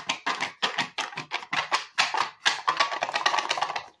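Small cardboard box of paper slips being shaken, a loud, fast, irregular rattle of the slips knocking inside the box that stops suddenly near the end.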